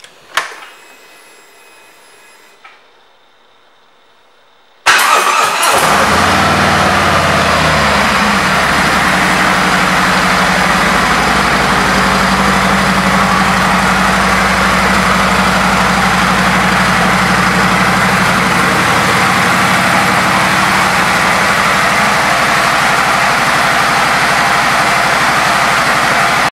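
2017 Harley-Davidson Street Glide's Milwaukee-Eight 107 V-twin being started: a switch click, a few quiet seconds, then about five seconds in the starter turns it over and the engine catches at once. It then idles steadily, settling after a few seconds, with the loping V-twin beat running to the end.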